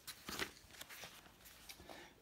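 A book page being turned by hand: a faint rustle and brush of paper, with a few soft strokes in the first second.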